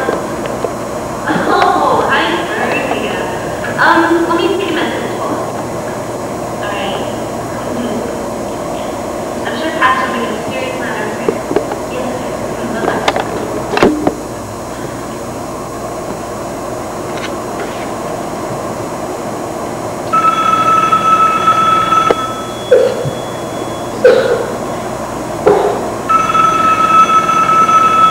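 Indistinct voices and room noise, then a telephone ringing twice near the end: two steady two-second rings about four seconds apart, with a few sharp knocks between them.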